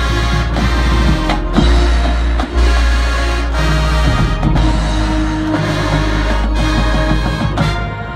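High school marching band playing: loud, sustained brass chords over a deep bass, broken by several brief cutoffs and accented hits.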